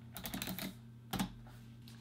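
Typing on a computer keyboard: a quick run of key clicks in the first part, then one louder knock a little after the middle.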